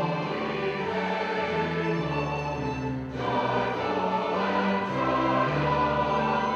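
Mixed choir singing with an orchestra of strings and horns, in held chords. The music dips briefly about halfway through before the next phrase begins.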